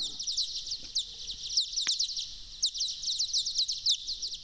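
Bat echolocation calls played back slowed to about a tenth of their original speed: a rapid series of short chirps, each sweeping downward in pitch, coming in uneven runs.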